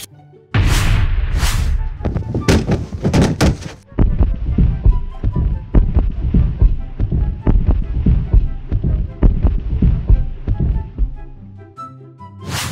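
A cartoon cannon shot about half a second in, followed by a long run of clattering impacts as the bricks of a smashed wall tumble and land, thinning out near the end. Background music plays underneath.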